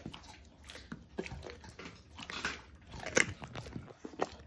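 Norwegian Elkhound chewing a raw chicken leg, bone and meat crunching in irregular bites, with the loudest crunches about three seconds in.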